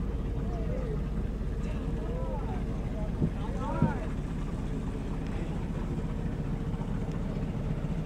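Boat engine running steadily, a low even drone.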